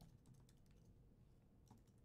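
Faint computer keyboard keystrokes, a short quick run of typing, barely above near silence.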